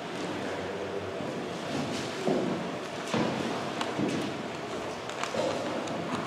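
Bible pages being turned: soft paper rustling with a few light ticks and knocks in a quiet room.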